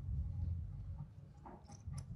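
A pause filled with a low steady hum, with a few faint short sounds about a second and a half in.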